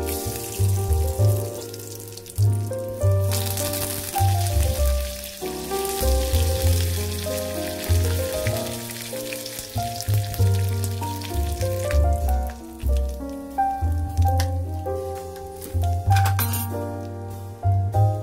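Background music with a melody and a low bass line, over the sizzle of hot oil in a wok as mustard seeds, dried red chillies and curry leaves fry for a tadka. The sizzle is strongest from about three to twelve seconds in.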